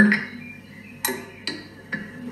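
A brief vocal sound at the start, then three sharp ticks about half a second apart.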